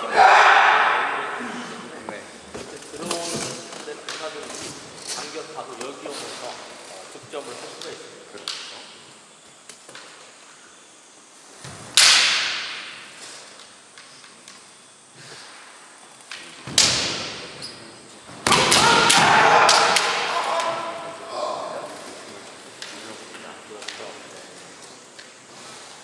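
Kendo fighters shouting kiai and striking with bamboo shinai, the sounds echoing in a large wooden-floored hall: a loud shout at the start, light clacks of the shinai touching a few seconds in, two sharp cracks of a strike or stamp about twelve and seventeen seconds in, and a longer shout from about eighteen seconds.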